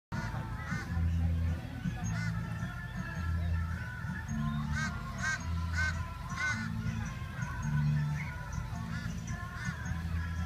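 Music with a steady bass line of held low notes repeating about once a second. Over it, short arching calls come in a quick run about five seconds in, four of them roughly half a second apart.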